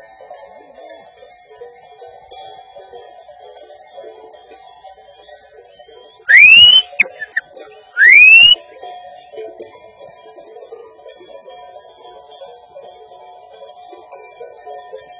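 Many small sheep bells tinkling irregularly as a flock grazes, broken about six and eight seconds in by two loud rising whistles, each about half a second long.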